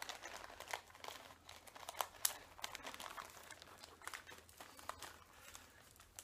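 Faint, irregular crinkling and rustling of packaging as tobacco samples are handled.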